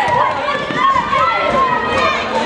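Many high children's voices shouting and calling at once, overlapping, with players' running footsteps on the hard court underneath.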